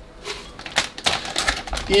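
Plastic salad bag crinkling as baby spinach is shaken out of it into a blender jar: a quick, irregular run of crackles.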